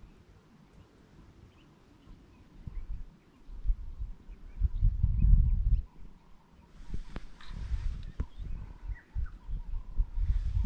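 Faint, scattered bird chirps. From about three seconds in, irregular low rumbling on the microphone, loudest around the middle, then a rustling noise with a few sharp clicks in the last few seconds.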